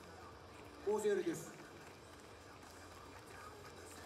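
Low background noise with one short voice about a second in.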